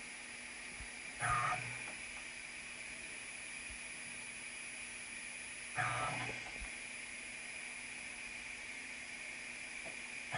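CNC mill axis servo motor driving the ballscrew through a timing belt in short indexed moves: a brief whir about a second in and again near six seconds, with a steady machine hum and hiss in between. Each move steps the axis about five thousandths of an inch, one sprocket tooth, during a motion-error test.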